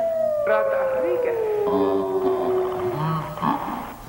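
Edited film soundtrack: a long wailing, howl-like tone sliding slowly down in pitch over about three seconds, with short warbling glides and choppy voice fragments around it. It grows quieter about three seconds in.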